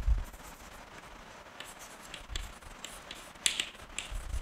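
Chalk writing on a blackboard: a scatter of short taps and scratches, the sharpest about three and a half seconds in, after a dull thump at the very start.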